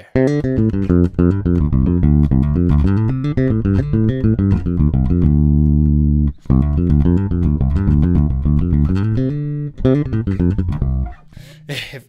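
Electric bass guitar playing a fast, busy run of minor pentatonic licks, the stock pentatonic playing held up as what too many solos sound like. The run is broken by held notes about five seconds in and again near nine and a half seconds, with a brief gap between, and it stops about a second before the end.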